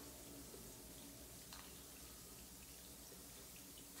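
Near silence: a bath bomb fizzing faintly as it dissolves in bathwater, with one faint tick about one and a half seconds in.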